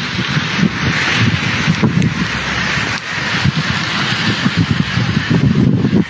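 Wind buffeting and handling noise on a handheld phone's microphone, an uneven low rumble under a steady hiss, with a couple of brief knocks.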